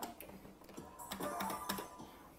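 A Merkur slot machine's electronic game sounds: faint ticks and a short, simple tune played when a small win is shown on the reels, a little louder in the second second.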